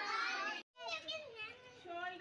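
A group of children's voices together, cut off by a sudden brief gap a little over half a second in, after which children's voices carry on.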